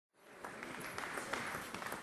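A congregation applauding, fading in about a quarter second in and then holding steady.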